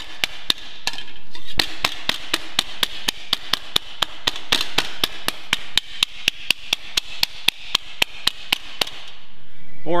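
Hardwood slapper striking a sheet-metal panel held over a forming head: a quick run of sharp slaps, about four a second, with a short pause about a second in. Each slap stretches the panel edge to add shape without the blemishes a mallet leaves.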